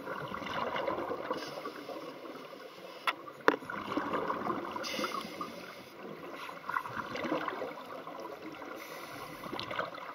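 Scuba air bubbles gurgling and rising, heard underwater, with two sharp clicks about three and three and a half seconds in.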